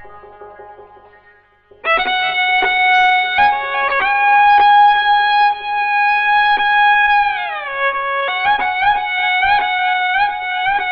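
Persian classical instrumental music in the Dashti mode: a few faint struck notes, then a loud melody comes in about two seconds in, holding long notes and sliding down in pitch near the end, with quick ornamented notes and drum strokes in the last couple of seconds.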